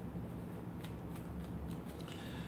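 Faint handling of a deck of tarot cards being shuffled, a few soft clicks and rustles, over a low steady hum.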